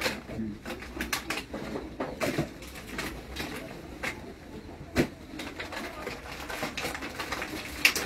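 Rustling and crinkling of a woven plastic sack and plastic bags being rummaged through by hand, in irregular short crackles, with a sharper knock about five seconds in.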